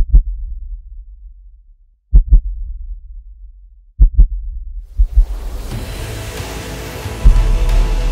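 Heartbeat sound effect: low double thumps, one pair about every two seconds, each with a short rumble after it. About five seconds in, music swells in over them, with a deep boom near the end.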